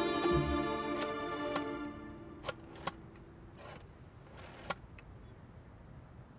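Sad string music fades out in the first couple of seconds, followed by a few sharp clicks and two short whirring rasps from an old rotary telephone as its receiver is lifted and its dial is turned.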